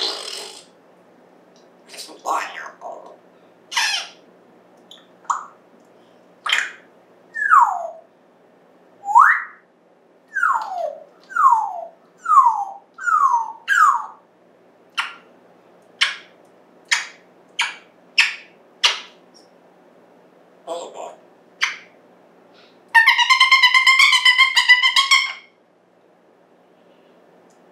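African grey parrot vocalising in short separate calls: a run of quick gliding whistles, most falling in pitch and one rising, then a string of sharp clicks. Near the end comes a longer buzzy, pitched call lasting about two and a half seconds.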